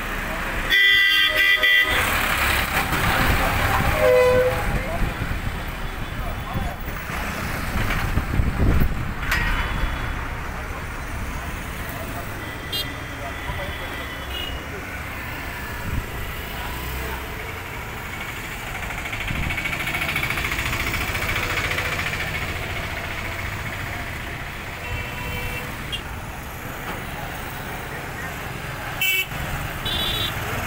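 Road traffic passing on a town street: motorcycles, scooters and cars running by. A vehicle horn honks for about a second near the start, with a shorter honk a few seconds later.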